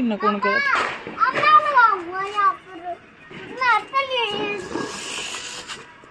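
A young child's high-pitched wordless calls and squeals, several in a row with gliding pitch, followed by a short hiss near the end.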